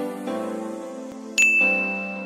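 Background intro music with a single bright bell ding about one and a half seconds in that rings on: a notification-bell sound effect.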